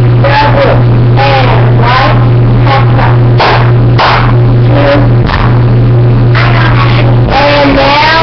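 A young girl's voice shouting cheer chants, overloaded and distorted on a webcam microphone, over a steady low electrical hum.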